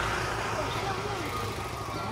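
Motor scooter engine running as it rides past, over steady street noise, with a faint voice in the background.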